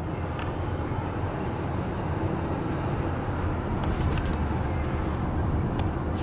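Steady low rumble of road and engine noise heard inside a moving car's cabin, with a few faint clicks in the second half.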